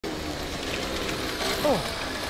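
Small motorcycle engine running steadily as it rides up. A voice gives a short falling "oh" near the end.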